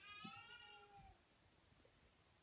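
A cat meowing once, faintly: a single drawn-out call lasting about a second that falls slightly in pitch.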